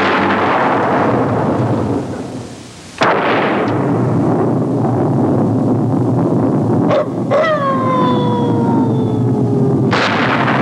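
Spooky horror-movie sound effects: a sudden crash like thunder that dies into a low rumble, a second crash about three seconds in, then two sharp clicks and a long wail that falls slowly in pitch.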